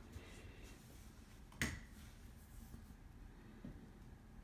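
A quiet room with faint movement and handling noise, and one sharp click about one and a half seconds in.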